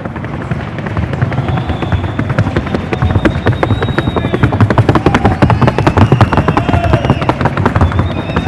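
A Paso Fino horse's hooves drumming on a wooden sounding board (pista sonora) in its fast, even four-beat fine gait. Many light, rapid strikes come each second, loudest past the middle.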